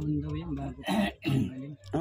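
A person coughing once amid conversational talk.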